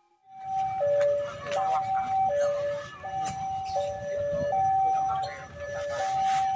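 Railway level-crossing alarm sounding an alternating two-tone warning, high then low, each tone lasting about three-quarters of a second, over a low background rumble. It signals that the barrier is down for an approaching train.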